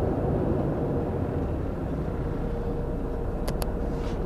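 Steady road and engine rumble of a car driving, heard from inside the cabin, with two quick clicks close together near the end.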